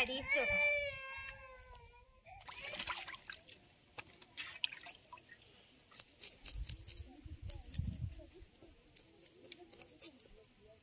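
For about the first two seconds a high-pitched voice holds and slides a drawn-out note. After that a knife scrapes and clicks against small whole fish held over a pot of water, with light splashes of water.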